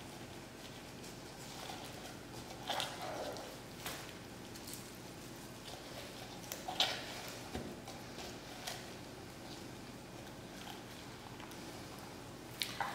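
Faint, scattered handling noises of gloved hands pushing rosemary twigs into a raw chicken's cavity: soft squishes of wet skin and flesh and light rustles of plastic sheeting, with a few small clicks.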